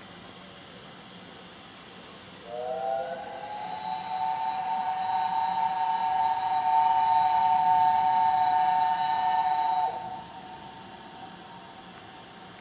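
Steam locomotive whistle: one long blast of about seven seconds, a chord of several tones whose pitch slides up as the whistle opens, then cuts off sharply.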